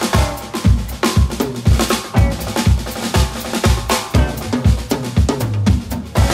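Live band playing a blues number with the Sonor drum kit to the fore: a steady kick-and-snare beat, a strike about every half second, with bass and other instruments underneath.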